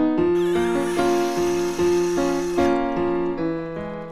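Soundtrack piano music playing slow, held chords. About a third of a second in, a loud hissing rush of noise joins the music for a little over two seconds and then cuts off.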